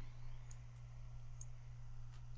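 Two faint computer mouse clicks, about a second apart, selecting an item from a software menu, over a steady low hum.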